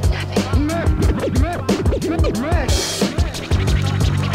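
Hip-hop beat with drums and bass under turntable scratching: short record scratches sweep up and down in pitch, one after another, over the beat.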